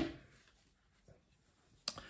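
Quiet room tone with faint handling, then one sharp click near the end as a folding knife and its packaging are handled.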